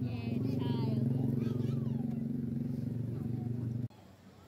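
An engine-like motor running with a steady low drone, with people's voices over it; it cuts off suddenly near the end.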